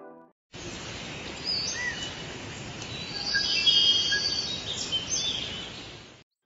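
Forest ambience: a steady background hiss with scattered bird chirps and short whistled calls, busiest around the middle. It starts about half a second in and fades at the end.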